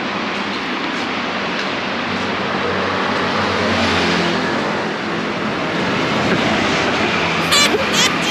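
Street traffic of passing motor scooters and cars, a steady noise that swells a little around the middle, with a few brief sharp sounds near the end.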